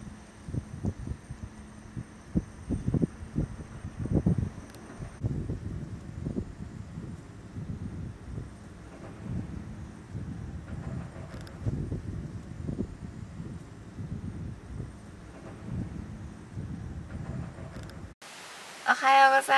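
Wind buffeting the microphone in uneven low gusts.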